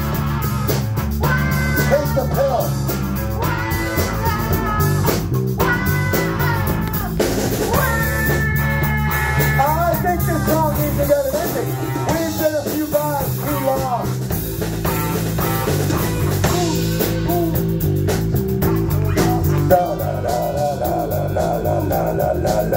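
Live rock band jamming on drum kit, electric bass and electric guitar. A sliding, bending lead line rides over a steady bass and drum groove, and about twenty seconds in the lead drops to a lower, busier figure.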